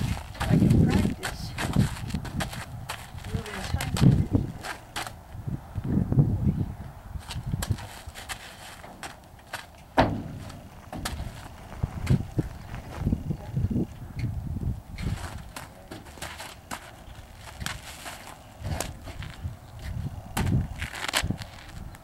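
A draft horse's hooves thudding and knocking irregularly on a horse trailer's floor and ramp as he steps into and out of the trailer. The heaviest thumps come about half a second in and at about 4, 6 and 10 seconds.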